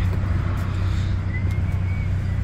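Street traffic: a steady low engine rumble from road vehicles, with a faint thin high tone about halfway through.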